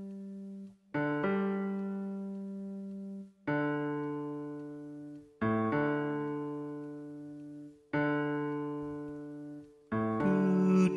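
Piano-voiced chords played on an Akai MPK Mini Play keyboard, a new chord struck about every two to two and a half seconds and each left to ring and fade.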